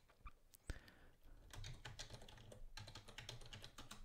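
Faint typing on a computer keyboard: a quick, irregular run of keystrokes as a word is typed in.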